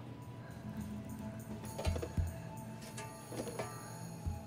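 Suspenseful film score: held high tones with light metallic clicks, and a pair of low thuds about two seconds in, like a heartbeat.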